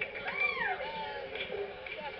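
A person's high call that rises and then falls in pitch, once, about half a second in, over faint background crowd noise.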